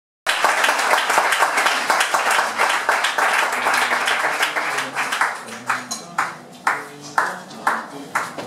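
Audience applauding, dense at first, then fading and thinning to a few scattered claps from about six seconds in.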